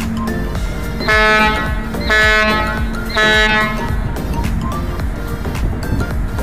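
A ferry's horn sounds three short blasts, evenly spaced about a second apart; three short blasts are the signal that a ship is going astern as it backs off the berth. Background music plays throughout.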